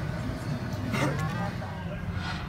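Casino floor background noise: a steady low hum with indistinct voices, and a brief pitched sound about halfway through.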